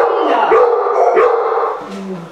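Dog barking repeatedly: three pitched barks about half a second apart, dying away near the end.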